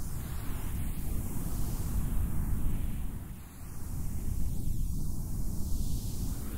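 Noise-ambient soundscape: a dense, crackling low rumble under a hiss that swells and fades in slow waves, dipping briefly about midway.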